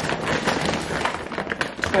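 Rustling and crinkling of plastic-wrapped toilet rolls being pulled out of a fabric reusable shopping bag, a run of many small crackles.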